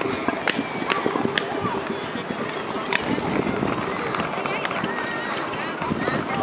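Chatter of a crowd of children and adults, with scattered sharp clicks and knocks.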